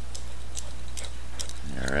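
Scattered light clicks and jingles as two Brittany spaniels run up close: their collar tags jangling. A steady low hum runs underneath.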